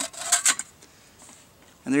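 A sharp click as the lid is pressed onto a Stanley two-cup cook pot nested in a tin-can stove, followed by a few short metallic clinks and scrapes, then quiet.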